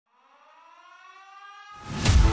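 A siren-like intro sound effect: a pitched tone that rises slowly and gets louder from silence. Near the end a rushing whoosh builds up underneath and leads straight into the intro music.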